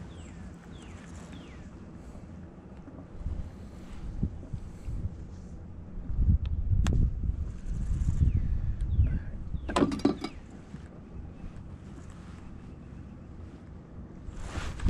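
Low rumble of wind on the microphone, stronger for a few seconds in the middle. A single sharp click falls about seven seconds in, and faint, high, falling bird chirps come near the start and again later.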